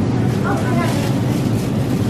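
Shop background noise: a steady low hum with faint voices.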